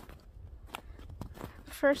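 Footsteps in snow: a few irregular, soft crunching steps at a slow walking pace.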